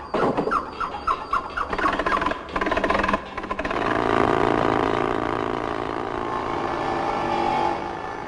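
A large wooden cart on wooden wheels being rolled: first a quick run of short rising squeaks, then a rattle, then a steady rolling rumble.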